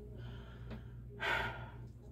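A woman takes one loud, breathy intake or exhale about a second in, lasting under half a second, over a steady low hum.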